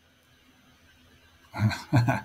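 Near silence for the first second and a half, then a man starts laughing.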